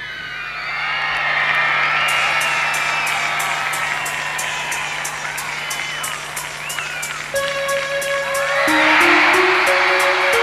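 A large concert crowd cheering, screaming and whistling over a low held keyboard note and a fast steady ticking beat. About seven seconds in a synthesizer keyboard line enters, and the crowd noise swells just after.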